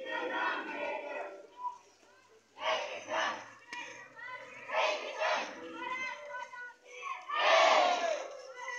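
A marching crowd of schoolchildren shouting slogans together in loud, repeated bursts about every two seconds, the loudest near the end.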